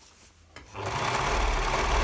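MyLock overlocker starting up about two-thirds of a second in, then running steadily at speed with a fast, even stitching rhythm as it overlocks the edge of a heavy padded layer.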